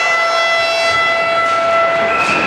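Ice rink's game horn sounding one long, steady, loud note of about two seconds.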